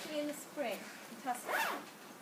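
The zip of a plastic mini-greenhouse cover being pulled, in short runs, with a woman talking over it.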